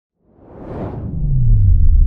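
Logo-reveal sound effect: a whoosh that swells in after a moment of silence and fades, while a deep bass tone slides downward into a sustained low rumble.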